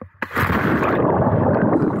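Sea water churning and splashing close to the microphone, a dense rushing noise that starts a fraction of a second in; its high hiss falls away about a second in.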